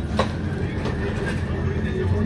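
Steady low rumble of a passenger ferry's engines heard inside the cabin, with one brief sharp sound about a quarter second in.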